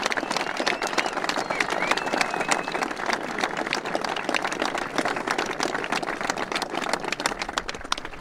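A crowd applauding with many hands clapping, voices and a few calls mixed in.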